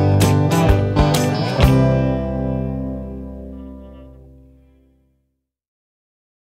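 Indie rock track ending on strummed guitar: a few strokes about two a second, then a final chord about one and a half seconds in that rings out and fades away to silence over about three seconds.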